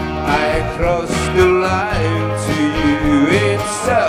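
Live band music: a strummed acoustic guitar over sustained bass notes and keyboards, with a melody line that slides up and down in pitch.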